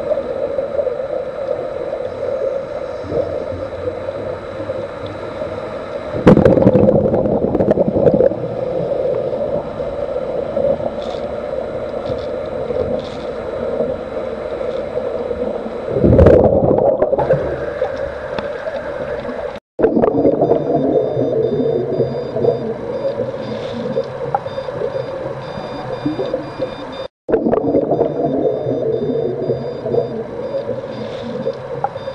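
Underwater bubbling and gurgling of air rising from scuba gear over a steady hum, with two louder surges of bubbling about six and sixteen seconds in. The sound cuts out briefly twice.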